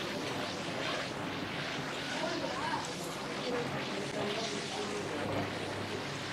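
Restaurant dining-room ambience: a steady hiss of room noise with faint, distant voices talking.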